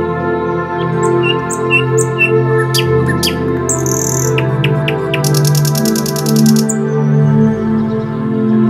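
Calm background music of long held notes, with bird chirps over it: a run of short chirps in the first half and a rapid buzzy trill lasting over a second just past the middle.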